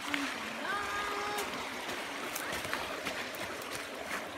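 Creek water running steadily, with scattered crackles of dry brush and twigs as someone walks through the flood debris. A short held voice sound comes about a second in.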